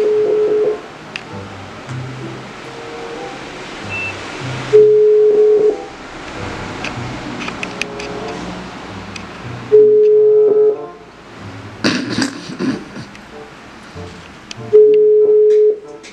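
Telephone ringback tone heard through a mobile phone's speaker: a steady single-pitch beep about a second long, repeating every five seconds, four times. This is the Brazilian ringing-tone cadence and a sign that the call is ringing on the other end and has not been answered. Background music plays underneath.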